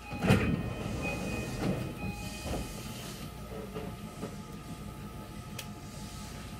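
A stopped train's sliding passenger doors closing: a heavy thud about a third of a second in, then a few lighter knocks, with a high steady tone sounding for about two seconds over the train's steady rumble.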